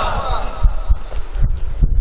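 Low, irregular thumps of air from a waved hand fan buffeting a microphone. Near the start, the tail of an amplified voice's echo fades out.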